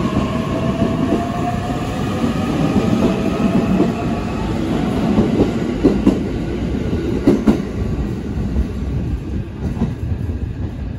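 E657 series electric limited express train pulling away from the platform and gathering speed: a running rumble with a faint motor whine rising slowly in pitch. In the second half its wheels clack a few times over rail joints.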